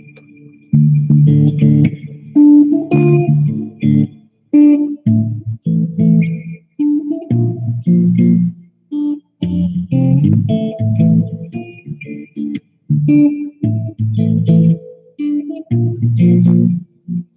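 Stratocaster-style electric guitar played through an amplifier: a stop-start riff of short, low chords and notes, each cut off sharply with brief silences between.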